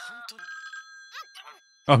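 A phone ringing: a steady electronic ring tone of several pure pitches, starting about a third of a second in and holding level at a moderate volume.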